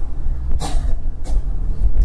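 Low steady rumble with a short breathy hiss about half a second in.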